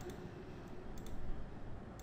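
Computer mouse button clicking, a couple of sharp clicks about a second apart, over a low background hum.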